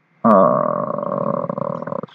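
A man's long, drawn-out hesitation 'euh', held at a steady pitch for nearly two seconds.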